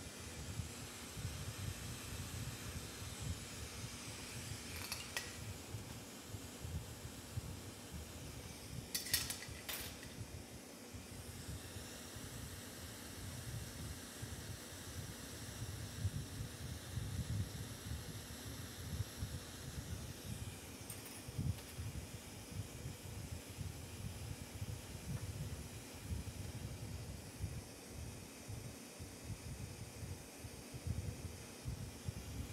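Glassworking torch flame running with a steady low rush and hiss, with a few light glass or tool clinks about five, nine and twenty-one seconds in.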